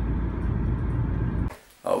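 Steady low rumble of a moving road vehicle heard from inside: road and engine noise. It cuts off suddenly about one and a half seconds in, and a man's voice starts just at the end.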